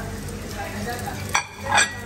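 An omelette frying in a pan with a steady sizzle, stirred with a spatula; a sharp clatter about a second and a half in and a louder burst just before the end as the pan is worked and the omelette is lifted.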